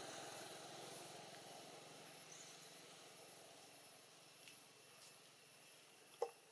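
Near silence: faint outdoor ambience with a steady thin high-pitched whine and a faint low drone that fades away.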